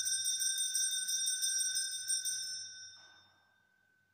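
Altar (sanctus) bells shaken in a fast rolling peal at the elevation of the consecration, marking the raising of the host or chalice. The shaking stops about two and a half seconds in and the bells ring out to silence.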